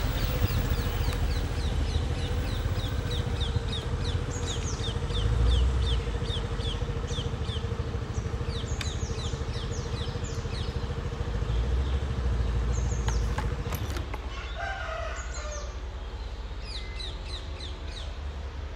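Birds chirping, one repeating a quick series of falling chirps, over a low rumble and a steady hum that stop about three-quarters of the way through.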